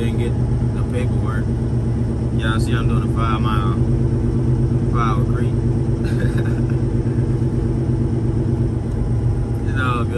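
Semi truck's diesel engine running steadily at low speed, heard from inside the cab. A few short snatches of voice come through over it in the first six seconds.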